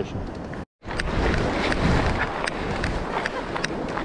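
Wind rushing over the microphone with surf washing along the shore, a steady noise with a few faint ticks. It drops out briefly to silence under a second in, then comes back.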